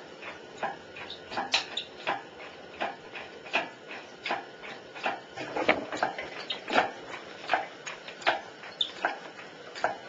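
Hoist chains and hooks clicking and clinking at an uneven rate of two or three sharp clicks a second, as the suspended electric motor and transmission are shifted.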